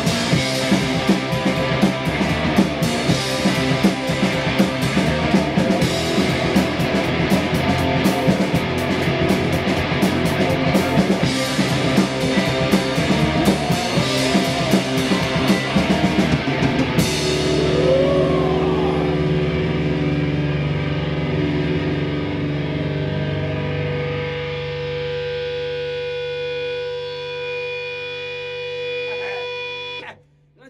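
Rock band playing live: drum kit with crashing cymbals, distorted electric guitars and bass. About halfway through, the drums stop and a final chord is held, ringing and slowly fading until it cuts off suddenly at the end.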